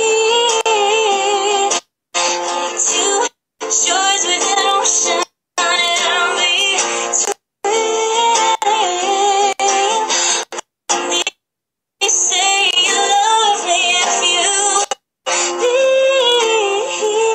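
A woman singing a slow melody to her own acoustic guitar accompaniment. The sound cuts out completely for moments several times, about half a second to a second each.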